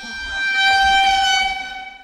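A single sustained horn-like tone: one steady note with overtones that swells up, holds, and fades out near the end.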